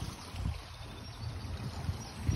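Wind buffeting the phone's microphone in irregular low gusts over a steady outdoor hiss.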